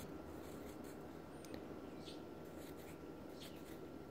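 Faint scratching of a wooden graphite pencil on lined paper, a few short strokes as letters and numbers are written.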